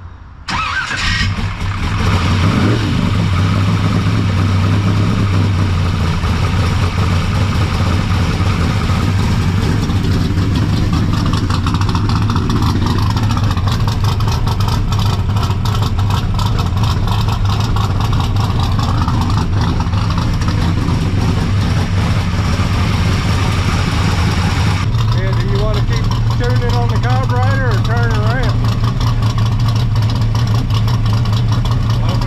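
A carbureted V8 with a four-barrel carburetor starts up about half a second in and then settles into a steady idle. The carburetor's holes have just been drilled bigger, and the run is a test of whether they are now too big or not big enough.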